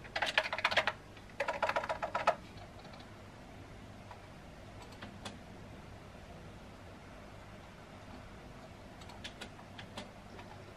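Typing on a computer keyboard with round, typewriter-style keycaps: two quick runs of clattering keystrokes in the first couple of seconds. After that only a faint steady background remains, with a few lone clicks.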